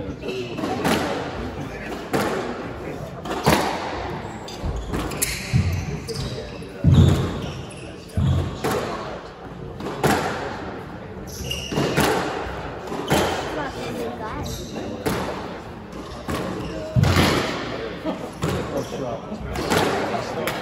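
A squash rally: sharp cracks of the ball off the rackets and walls about once a second, with heavy thuds and sneakers squeaking on the wooden court floor, echoing in the court.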